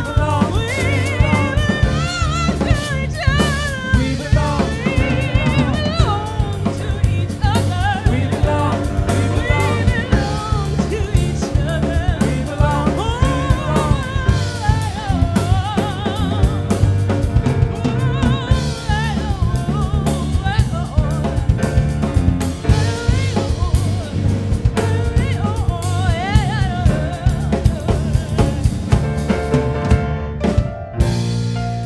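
Live band playing a song: singing with a wavering vibrato over grand piano, electric bass guitar and drum kit, the drums striking steadily.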